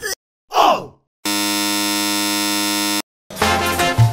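Edited sound effects: a short voice-like groan sliding down in pitch, then a steady electronic buzzer tone held for nearly two seconds that cuts off abruptly. Background music starts near the end.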